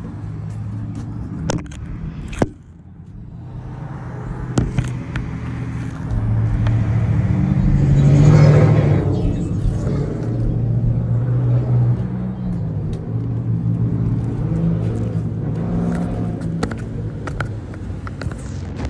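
Road traffic: a motor vehicle passing, its engine and tyre noise swelling to a peak about eight seconds in and then fading back into a steady low rumble. Scattered short clicks and knocks from the phone being handled run through it.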